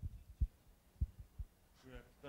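A few dull, low thumps picked up by the microphone, about five in a second and a half, irregularly spaced.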